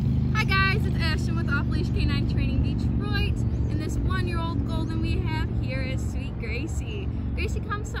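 Birds chirping over a steady low rumble of road traffic.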